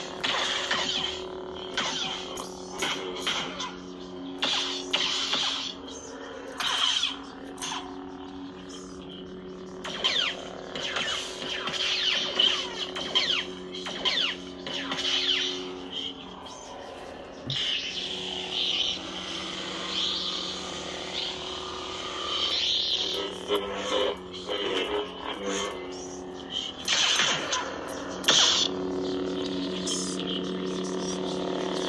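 Lightsaber soundfont 'The Void' by BK Saber Sounds playing from a Proffie saber: a steady, layered hum with whispering voices in it. Whooshing swing sounds swell over the hum again and again as the blade is moved.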